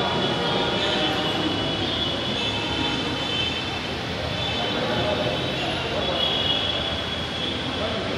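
Indistinct babble of many people talking at once in a crowded room, over a steady background noise.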